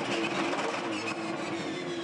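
Supercars Holden Commodore's V8 engine heard from inside the cockpit, running at fairly steady revs with a steady drone.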